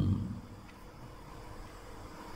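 A man's short low "hmm" at the very start, then a pause holding only faint steady room tone through the microphone.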